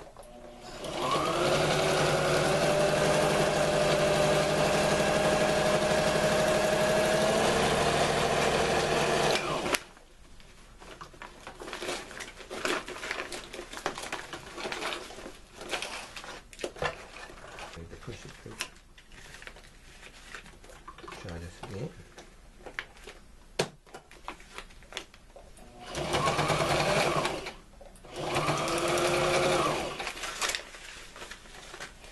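Electric sewing machine stitching a folded tarp strap. Its motor whine rises as it gets up to speed, runs steadily for about nine seconds and stops. The fabric is then handled and rustled, and two short runs of stitching come near the end.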